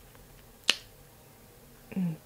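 A single sharp click close to the microphone about two-thirds of a second in, against a quiet background.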